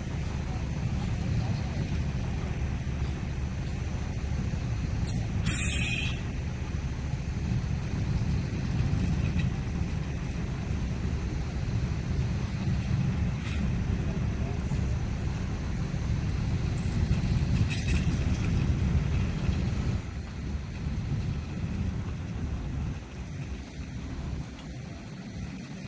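Diesel engine of a road-rail vehicle running with a steady low rumble while it moves a Light Rail work train along the track. A short burst of hiss comes about five and a half seconds in.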